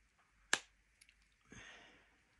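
A sharp plastic click about half a second in, a fainter click, then a brief rustle near the end as a wireless earbud case and its cover are handled.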